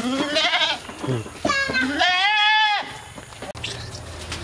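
A young black-and-white goat bleating: one long, quavering bleat of over a second, starting about a second and a half in.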